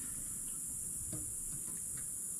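Steady, high-pitched drone of rainforest insects, with a faint tick about a second in.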